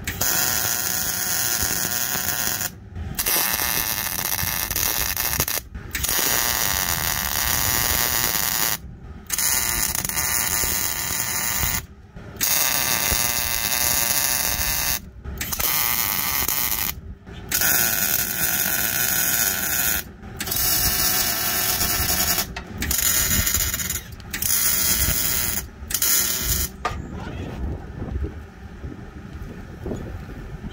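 MIG welding arc from a Miller 252 wire-feed welder, crackling in a series of about eleven bursts, each a second or two to three seconds long with short pauses between. These are tack welds fixing a Z-notch splice in a steel truck frame rail. The bursts stop a few seconds before the end.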